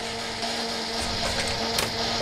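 A home-repaired electric toaster switched on, giving a steady electrical buzz and hiss. A sharp click comes near the end.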